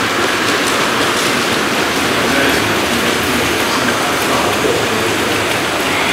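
Model trains running on a layout's metal track: a steady clattering rattle of small wheels on rail joints and whirring mechanisms.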